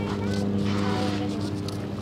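A long, steady, low buzzing prank fart sound that fades out near the end.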